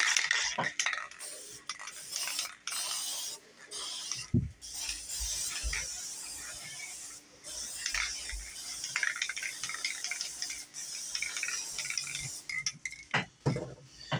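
Aerosol spray paint can hissing in long bursts, with short clicks and knocks between them and a few sharp knocks near the end.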